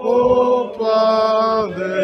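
Singing, led by a male voice close to the microphone holding three long, steady notes in turn, the last one lower.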